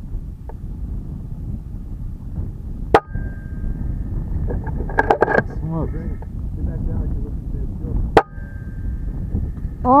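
Two sharp shots from a PCP air rifle, about five seconds apart, over steady wind rumble on the microphone.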